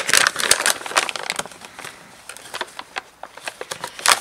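Sheets of Ilford photographic printing paper being handled and drawn out of their box: paper rustling and crinkling with quick small clicks. Busiest in the first second or so, then lighter and scattered.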